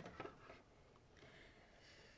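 Near silence: room tone, with a few faint ticks just after the start.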